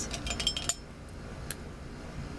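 Pens and metal tools clinking against each other and against a ceramic pen cup as a brush pen is pulled out. A quick run of clinks comes first, then a single tick about a second and a half in.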